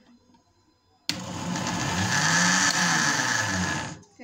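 Blackford juicer-blender's electric motor grinding shredded chicken in its glass jar. It starts abruptly about a second in, runs loud with its pitch wavering up and down, and stops just before the end. The motor is straining under a load the juicer is not made for, the overload that made it smoke and burn out.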